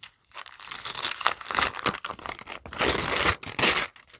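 Gift wrapping being torn and crinkled by hand as a present is unwrapped: a continuous, uneven rustling and ripping that grows louder near the end.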